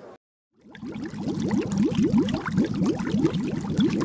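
Water bubbling and gurgling, a steady run of quick rising blips several times a second, starting about half a second in.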